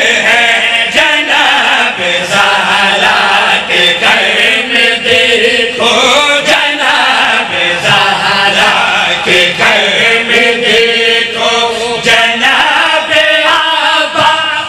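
Men chanting a devotional recitation at full voice through a PA: a lead reciter with several others joining in as a chorus on their own microphones.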